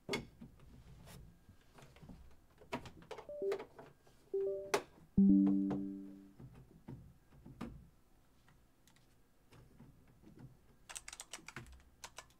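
A few short synth notes from the FLEX plugin as its presets are tried out, the loudest one about five seconds in, fading away over about a second. Scattered clicks and taps at the computer around them, with a quick run of clicks near the end.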